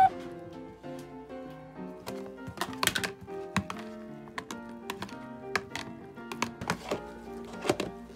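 Background music with a steady melody, over irregular clicks and knocks of a metal spoon against a plastic food container as diced microwaved potatoes are stirred and the container's lid is handled.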